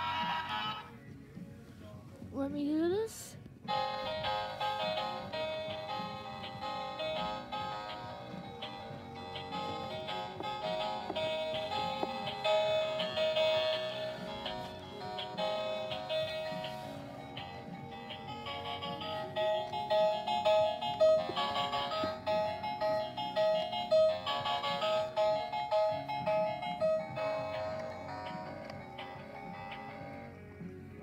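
An animated Peanuts plush toy's built-in music playing a melody with repeated notes. A short rising glide comes about three seconds in, just before the song starts.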